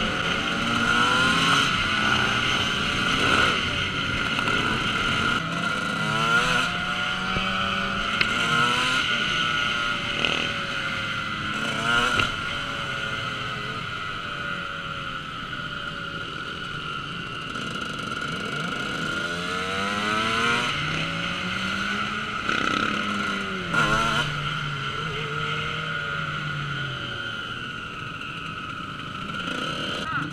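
Motorcycle engines on a group ride, the ridden dirt bike's engine running steadily, with its revs repeatedly climbing and dropping as it accelerates and shifts; near the end the level sags as it slows down.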